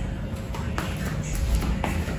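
Two soft footsteps about a second apart over a low, steady rumble.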